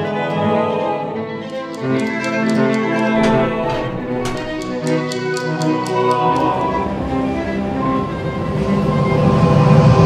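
Orchestral film score with bowed strings holding chords, a run of short sharp clicks over the first half, and the music swelling louder near the end.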